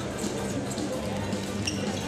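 Basketballs bouncing on a hardwood court during a warm-up, a few sharp bounces and shoe squeaks in the hall, over background music with steady held notes.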